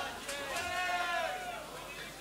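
A person's voice calling out in long, drawn-out tones on a live concert recording, in a break with no music playing.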